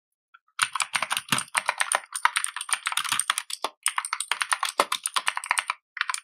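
Computer keyboard typing: a rapid run of keystrokes that starts about half a second in, breaks briefly in the middle and stops just before the end.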